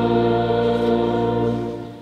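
Church choir singing with accompaniment, holding a final sustained chord over a steady bass note that fades away just before the end.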